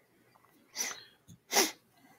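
A person sneezing: a short breath in, then a sharp burst of breath a little past halfway through.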